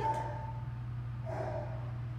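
A steady low hum, with a short held high tone at the very start and a faint brief pitched sound, like a small vocal sound, about a second and a half in.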